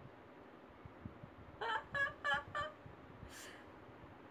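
A woman laughing softly: four quick, high-pitched "ha" sounds about a second and a half in, then a breathy intake of breath.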